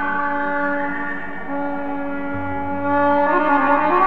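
Instrumental Armenian improvisation: a solo wind instrument plays long held notes with slides between them, over a low drone that comes in about halfway.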